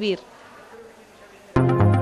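Electronic news jingle with sustained synthesizer chords and a pulsing bass, starting suddenly about one and a half seconds in after a brief lull that follows the last word of a woman's narration.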